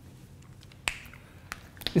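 A few sharp clicks of a marker tip striking a whiteboard as it writes: one just before a second in, another about half a second later, then a quick pair near the end.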